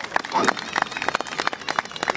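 A crowd clapping hands quickly together, many sharp claps close upon one another, kept up at the 'double speed' the audience was asked for. A voice is heard briefly about half a second in.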